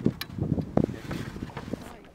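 A few light knocks and rustles as a pole and gear are handled aboard a small boat, over a low rumble of wind on the microphone.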